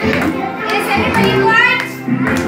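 Music with singing playing, mixed with children's voices.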